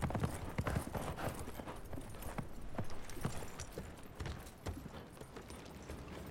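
Two horses walking, their hooves clip-clopping in an uneven rhythm of several steps a second.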